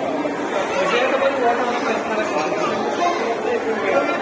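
Background chatter of several people talking at once, with no single voice standing out.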